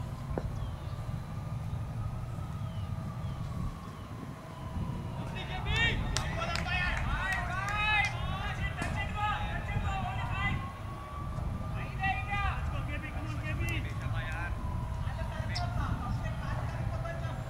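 Cricket players' voices calling out across the field in two bursts, the first about a third of the way in and the second shortly after the middle, over a steady low rumble and a faint hum that slowly rises and falls in pitch.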